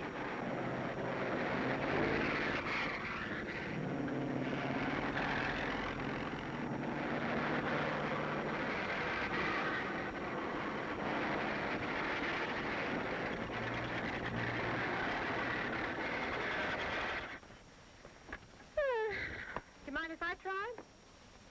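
Cars on an old film soundtrack passing one after another on a country road, a steady engine and road noise that swells and fades several times, then stops abruptly about three seconds before the end. A few short pitched sounds follow just before the end.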